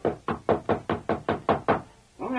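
Knocking on a front door, a radio-drama sound effect: about nine quick, evenly spaced raps, about five a second.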